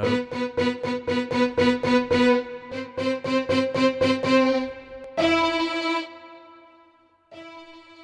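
Sampled solo violin from the VSCO 2 Community Edition library, arco vibrato articulation, triggered from a software instrument: one note repeated quickly, about four times a second, then a slightly higher note repeated, then a single held note that cuts off about a second later. Each repeat plays the same recorded sample whatever the velocity, since this articulation has only one sample per note.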